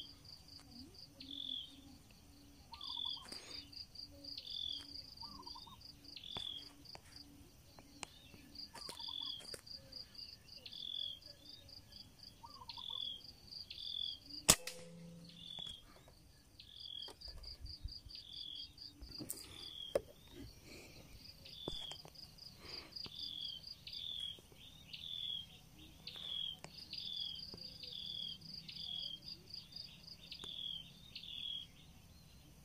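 Insects trilling in pulsing bursts with steady short repeated chirps in the trees. About halfway through comes a single sharp crack from a .22 (5.5 mm) PCP air rifle firing.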